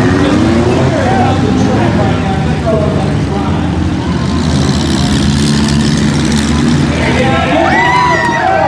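Several demolition derby cars' engines running loudly together, with shouting voices over them that are plainest near the end.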